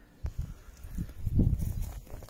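Low, irregular rumbling and bumping on the microphone, with a sharp knock about a quarter second in and a louder swell around the middle.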